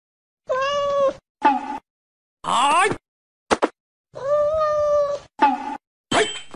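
A cat meowing six times in quick succession: two long, level meows, one rising meow in the middle and three short ones between, each cut off into dead silence.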